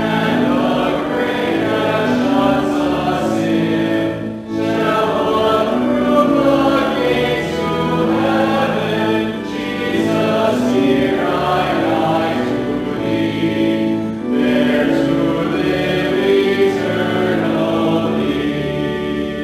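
A hymn sung by a group of voices, held notes with brief breaks between lines about four and a half and fourteen seconds in.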